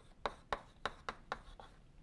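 Chalk writing on a blackboard: about half a dozen short, sharp taps and scrapes of the chalk as a few characters are written.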